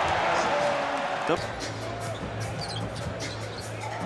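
Arena crowd cheering a made basket, cut off suddenly about a second in. Then a basketball is dribbled on the hardwood court, a string of short sharp bounces over low arena music.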